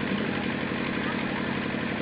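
Steady background hum and hiss of the recording, unchanging, with no speech.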